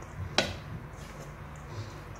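A wooden spoon stirring hot cooked basmati rice and butter in a stainless steel bowl, with one sharp knock of the spoon against the bowl about half a second in.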